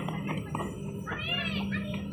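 Children's voices at play, with one short, high-pitched call that rises and falls about a second in.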